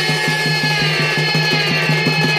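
Amplified Odia Danda Nrutya folk music: a fast, even drum beat over a low steady drone and long held melody notes, with no singing at this moment.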